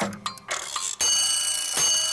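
Logo intro sting: a ticking, clockwork-like rhythm of clicks, then about a second in a sustained bright ringing shimmer over a hiss.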